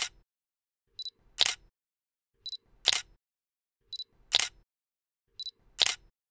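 Camera shutter sound effect repeating about every one and a half seconds: each time a short high beep, then about half a second later a louder shutter click.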